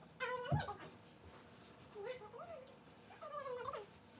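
Three short, high-pitched cries spread over a few seconds, each bending up and then down in pitch.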